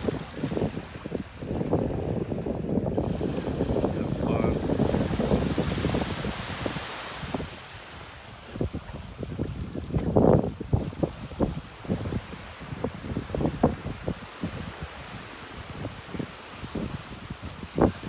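Wind buffeting the microphone in uneven gusts over the wash of small waves lapping at the shoreline.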